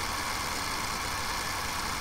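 Steady background hum and hiss with no distinct events.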